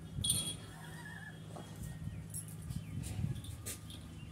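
A baby goat scuffling with a dog on concrete: light hoof taps and rustling, with a brief high squeak shortly after the start.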